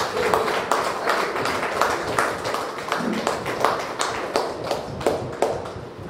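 Scattered sharp hand claps, several a second and irregular, over a murmur of voices.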